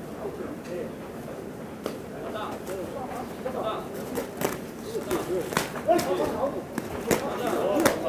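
Shouts and calls from ringside voices echoing in a hall, getting louder through the second half, over sharp smacks of boxing gloves landing during an exchange of punches.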